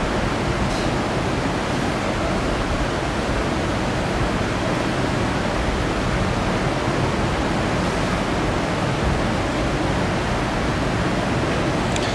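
Steady, even rushing noise with no speech, loud in the room sound while the speaker pauses.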